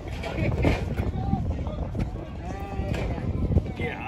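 Indistinct voices of people talking, over a low rumble of wind on the microphone.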